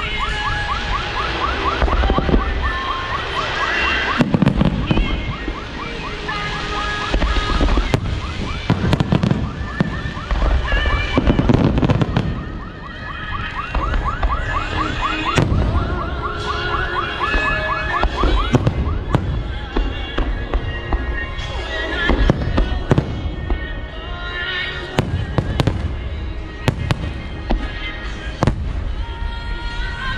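Aerial firework shells bursting one after another in a dense barrage, with repeated loud bangs and crackling, while music plays alongside.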